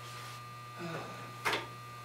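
Steady electrical hum, with one short sharp knock about one and a half seconds in as something is picked up from a cluttered work counter.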